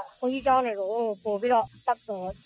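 Speech only: a person talking steadily in a radio news broadcast, with no other sound.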